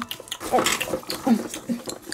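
A person's voice making playful eating noises for cartoon dogs chowing down: a couple of short gliding grunts. Under them is a light crackle of popcorn being shuffled by hand.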